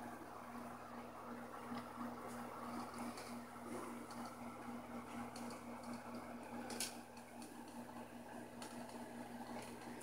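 Aquarium equipment running: a faint, steady electric hum with a soft bubbling, water-like hiss beneath it, and a few light clicks, the sharpest about seven seconds in.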